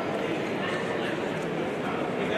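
Spectators' voices filling an arena hall, a steady babble with short shouts and calls over it.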